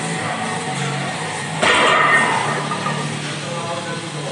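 Background music playing in a gym, with a sudden loud clank about one and a half seconds in that fades over a second: a loaded trap bar's plates set down on the floor.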